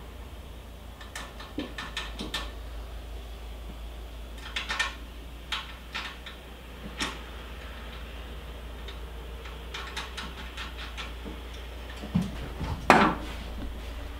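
Small metal clicks and clinks of nuts being threaded by hand onto the bolts of a steel mounting bracket, coming in scattered little clusters, with a louder clink near the end, over a steady low hum.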